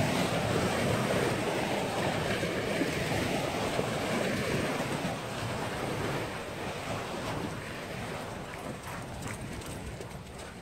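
Small river waves washing up onto a sandy shore, with wind buffeting the microphone. The wash is loudest in the first half and slowly fades toward the end.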